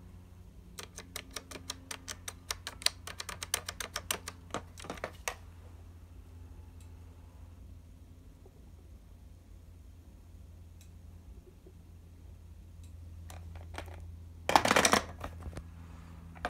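Keypad buttons of a Western Electric 2500 touch-tone desk telephone clicking in a quick run for about four seconds as a number is dialed. Near the end, a loud short clatter as the handset is set back onto the cradle.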